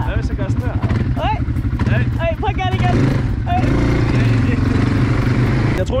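Kymco MXU 250 quad bike's engine running with a fast, even low pulsing under the rider. A rushing noise swells over it in the second half.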